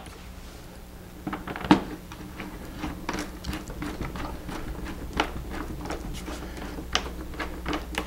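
A hand screwdriver driving the large rear wing screw into a foam model airplane: small irregular clicks and scrapes as the screw is turned, with one louder knock about two seconds in, over a faint steady hum.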